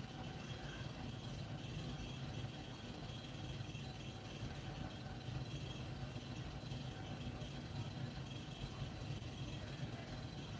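Faint, steady low hum with a light hiss; background noise with no distinct events.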